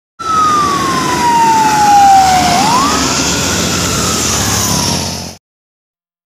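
A truck's siren-type horn sounds as the truck approaches: one tone slides slowly down, jumps back up about two and a half seconds in, then falls again. Engine and road noise run underneath, and the sound cuts off abruptly near the end.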